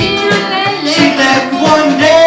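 Live folk song: an acoustic-electric guitar strummed over steady strikes on a homemade paint-bucket drum kit, with singing.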